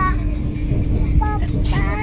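Steady low running rumble of the Vande Bharat Express heard inside the moving coach at about 47 km/h, with a steady hum. A child's voice is heard briefly about a second in and again near the end.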